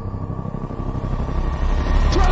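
A low rumbling drone under a faint held tone, swelling louder through the second half: tense underscore from a television drama's standoff scene.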